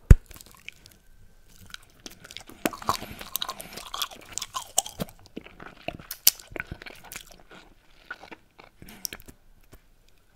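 A bubblegum bubble pops sharply just after the start, the loudest sound here. It is followed by close-miked chewing of bubblegum, full of small crackles and clicks for several seconds, then thinning out near the end.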